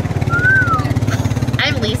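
A vehicle's engine idling with a steady, fast low pulse. About half a second in, a brief high note rises and falls over it.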